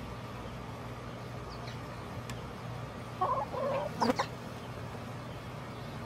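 Chickens clucking, with a short run of louder clucks about three seconds in and a sharper, higher call just after, over a steady low hum.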